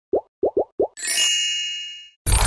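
Channel logo intro sound effect: four quick rising plops, then a bright ringing chime about a second in that slowly fades.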